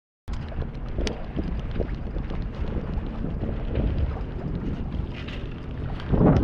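Gusty wind buffeting the microphone aboard a small sailboat under way, a steady low rumble with a faint knock about a second in.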